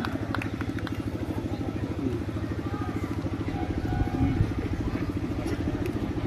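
An engine idling steadily close by, a fast, even, low chugging.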